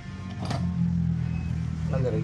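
A motor vehicle's engine running with a steady low hum that grows louder about half a second in, a sharp click sounding just as it swells.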